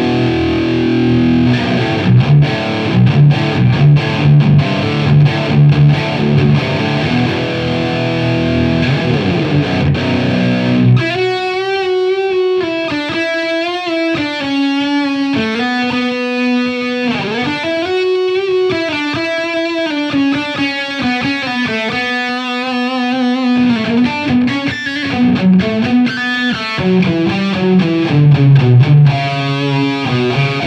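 Jackson Pro Plus Dinky DK Modern EverTune 7 seven-string electric guitar with Fishman Fluence pickups, played through a Marshall JVM410H on its OD2 overdrive channel. It opens with heavy, low, distorted riffing with rhythmic palm-muted chugs. About eleven seconds in it switches to a sustained single-note lead melody with bends and vibrato, and near the end it returns to low heavy riffing.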